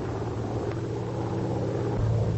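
Vought F4U Corsair's radial piston engine droning steadily in flight, a low even hum that holds the same pitch throughout.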